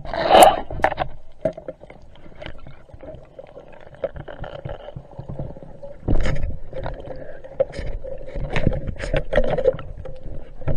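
Water rushing and sloshing against an underwater camera as a diver swims, with scattered knocks and clicks on the housing and a faint steady hum. There is a loud bubbly rush about half a second in, and heavier rushing from about six seconds on.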